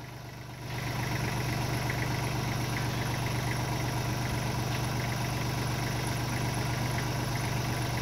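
Kubota L3240 compact tractor's diesel engine running steadily, getting louder about a second in and then holding at that level.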